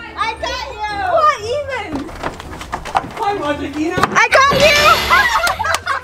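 High-pitched children's voices shouting and squealing in play, over background music, with a few sharp knocks about two and four seconds in.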